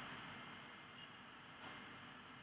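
Near silence: faint steady room hiss, with one soft keyboard key press about a second and a half in.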